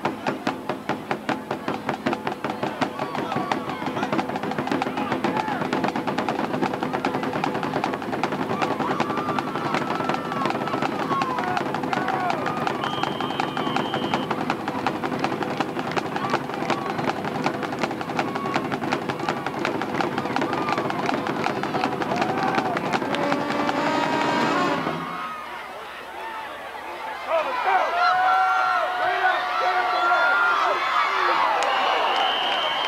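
Band music with rapid, dense drumming and some held notes, stopping abruptly about 25 seconds in. Crowd voices follow near the end.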